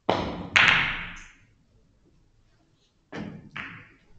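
Carom billiard shot: a sharp knock of the cue on the ball, then a louder impact about half a second later, followed about three seconds in by two softer knocks of the ball off the cushions or the other balls.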